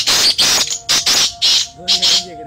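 Caged black francolins calling: a rapid run of loud, harsh, rasping calls, about three a second.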